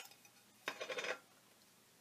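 Metal can of Gamblin cold wax medium being handled: a click at the start, then a brief clatter of small metallic clinks and scrapes about two-thirds of a second in.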